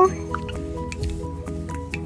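Background music: soft held chords that change every half second or so.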